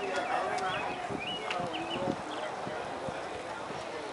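A run of irregular short knocks or taps starting about a second in, under people's voices.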